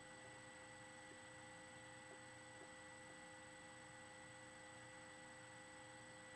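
Near silence: a faint steady hiss with thin, unchanging high tones, the recording's own noise floor.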